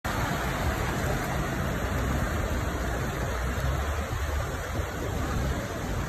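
Steady rushing of water on a flooded street, with a low rumble of traffic moving through the floodwater.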